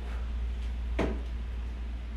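A single thud about a second in: a foot landing on a rubber gym floor as a one-legged jump in from a plank lands. A steady low hum runs underneath.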